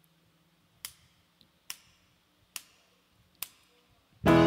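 Four sharp, evenly spaced clicks a little under a second apart, counting in the song before the band starts playing. A faint low hum lies underneath.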